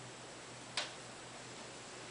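A single short click a little under a second in, from a hair comb being set into a ponytail, over a steady low hum.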